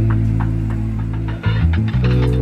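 Background music: low, held bass notes that change pitch twice near the end, with faint ticking percussion above.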